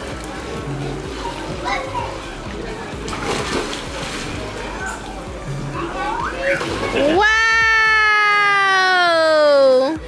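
Water splashing and sloshing in a swimming pool as children play, over background music. Near the end a voice holds one long note for about three seconds, falling slowly in pitch.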